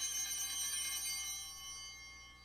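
Altar (sanctus) bells ringing at the elevation of the chalice, a bright cluster of high bell tones struck once just before and fading slowly.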